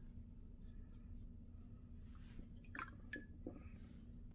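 Faint swishing of a paintbrush in a bowl of rinse water past the middle, followed by a few light clicks and taps.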